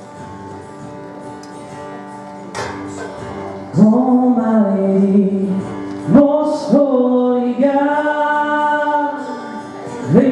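Live church worship band playing a slow worship song: a soft guitar-led instrumental introduction, then singing, led by a male voice, comes in about four seconds in and carries long, held notes.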